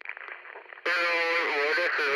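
A narrow, radio-like voice, faint at first and much louder from just under a second in, holding and bending pitched notes: the vocal opening of an intro music track.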